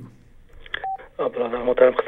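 A single short telephone-line beep about a second in, then a caller's voice coming through the phone line, thin-sounding with no highs.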